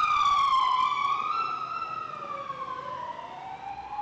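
An emergency vehicle siren wailing, its pitch sliding slowly down as it fades.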